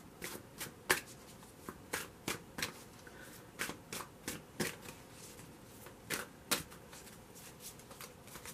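A tarot deck being shuffled by hand: a string of short, irregular card clicks, two or three a second, the sharpest about a second in.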